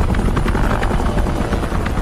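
Helicopter rotor chopping steadily, a loud, rapid, even beat concentrated in the low end.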